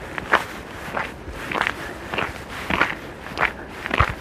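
Footsteps in fresh snow at a steady walking pace, about one step every half second.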